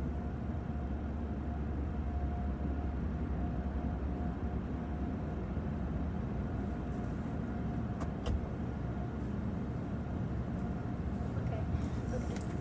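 Steady low rumble of a car's engine running at low speed, heard from inside the cabin, with a faint steady hum and a single click about eight seconds in.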